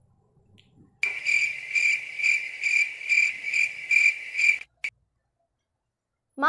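Cricket chirping: a high, steady trill that swells about twice a second. It starts abruptly about a second in and cuts off just as abruptly near five seconds.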